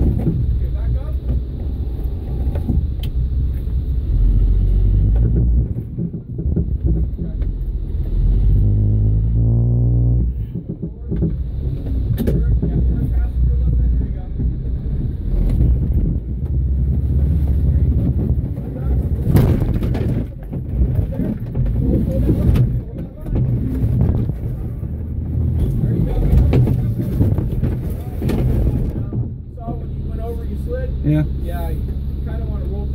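An off-road vehicle's engine runs and revs under load while crawling over rock, with sharp knocks from the rocks. About ten seconds in, one rev rises in pitch.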